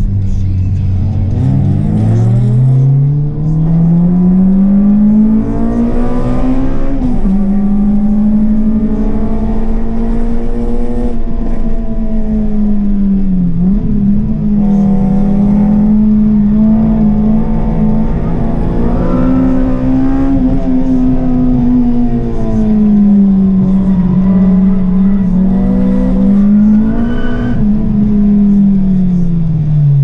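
Honda Civic Type R (EP3) K20 2.0-litre four-cylinder engine heard from inside the cabin, pulling hard under load. The revs climb steadily, then fall back and pick up again at gear changes and lifts several times.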